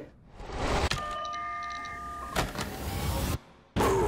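Trailer sound effects: a rising whoosh ending in a sharp click, then about a second of several steady electronic tones layered together, a second whoosh, a short drop to silence and a loud hit just before the end.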